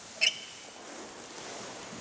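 A single sharp click about a quarter second in, followed by a brief high ringing, over a steady rushing hiss.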